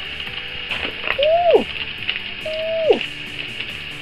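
Paper and plastic packaging of a sticker set crinkling and rustling as it is opened and handled. Two drawn-out wordless exclamations in a woman's voice, an 'ooh' rising and falling, come about a second in and again about two and a half seconds in.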